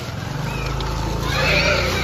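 A pig squealing briefly in the second half, over steady street noise with a low hum.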